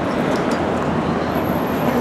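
Steady city street noise: a continuous rumble and hiss of traffic, with a few faint ticks.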